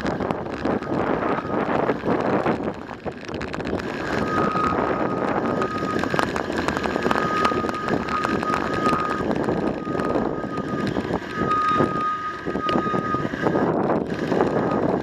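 Bicycle riding over rough, cracked pavement and then dirt and gravel, with wind buffeting the microphone and the bike and camera rattling over bumps. A steady high whine comes and goes from about four seconds in.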